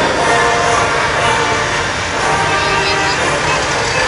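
Column of military trucks driving past, their engines a steady rumble, mixed with voices from the surrounding crowd.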